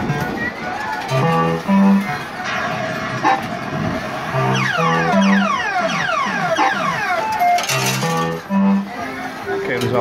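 Party Time fruit machine playing its electronic tunes and sound effects while its reels spin and stop: a repeating stepped bass melody, with a long cascade of falling electronic sweeps in the middle.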